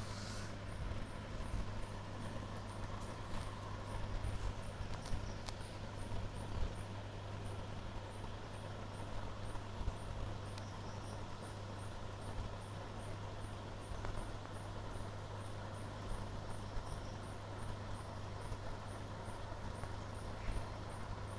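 A high insect chirp repeating steadily about three times a second, over a constant low hum.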